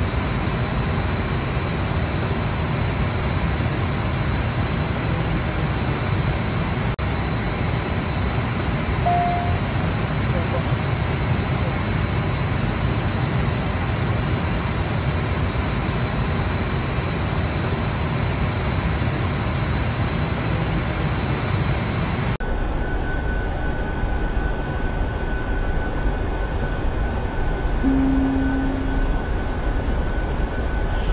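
Steady engine and airflow noise inside a private jet's cockpit in flight, recorded on a phone, with a thin steady high tone running through it. About two-thirds of the way in it cuts to a second recording of the same steady cockpit noise, duller in the highs.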